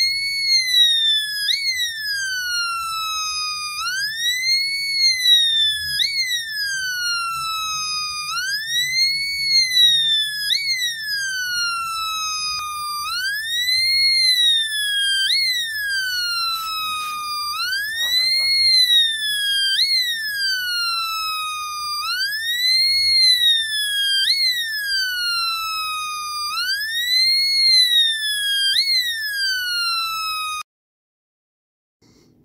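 Homemade two-NE555 police siren circuit sounding through a small speaker: a buzzy electronic tone that slowly rises and falls in pitch, one wail about every four and a half seconds, with a quick upward blip near the top of each.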